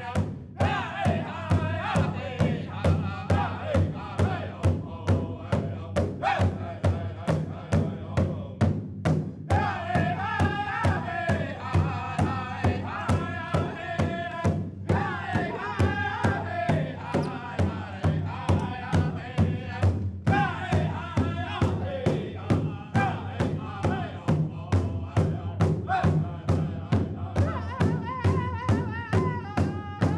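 A powwow drum group singing an honour song: several voices in a high, wavering chant over a steady, even drumbeat, with a few short breaks in the singing.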